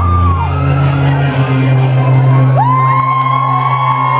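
Intro music played over the PA in a large hall, a steady low synth drone, with the crowd cheering and whooping over it in rising and falling cries.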